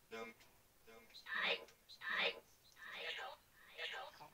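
Short fragments of whispered and half-voiced speech, a syllable or word at a time with brief gaps between.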